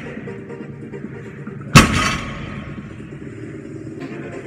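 A 160 kg barbell loaded with bumper plates dropped from a sumo deadlift lockout onto a rubber gym floor: one loud crash a little under two seconds in, ringing out briefly. Background music plays throughout.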